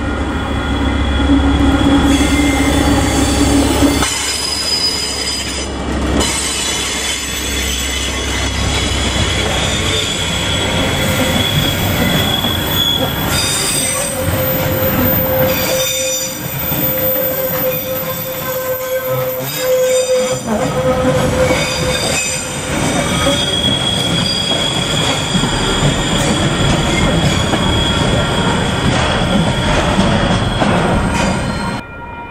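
Diesel locomotive passing at the head of a container freight train, its engine running with a deep rumble for the first few seconds. Then the container wagons roll by steadily, with wheels squealing in several high, held tones, one of them strongest through the middle of the pass.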